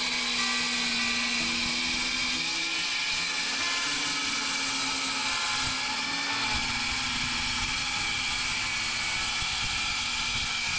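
Milwaukee cordless circular saw running and cutting along a composite decking board, a steady high whine throughout with more low rumble in the second half of the cut.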